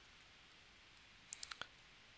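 Near-silent room tone, then about four faint, quick clicks in close succession a little past halfway.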